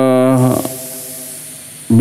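A man's drawn-out hesitation sound at a headset microphone: one held vowel at a steady pitch that ends about half a second in, followed by low room hiss.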